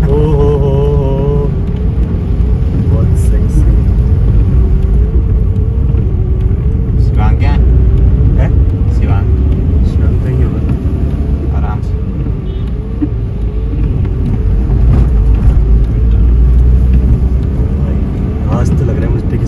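A car's engine and tyre rumble heard from inside the cabin while driving on a wet road, a steady low drone with a wavering hum over it.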